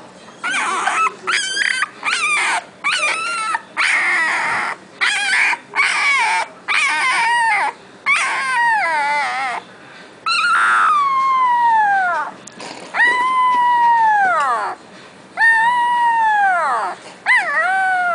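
Young boxer puppy howling: first a quick run of short, wavering whimpering cries, then from about halfway through a string of about five long howls, each sliding down in pitch.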